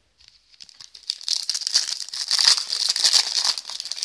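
Foil wrapper of a trading-card pack being torn open and crinkled in the hands: a dense, high crackle that starts faintly and grows louder about a second in.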